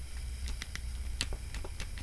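A plastic action figure being handled: a scattering of faint, sharp clicks as its upper torso joint is worked, over a low steady hum.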